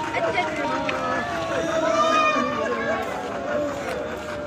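Women talking, several voices overlapping.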